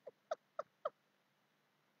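A man laughing: about four short breathy 'ha' pulses, each dropping in pitch, ending about a second in.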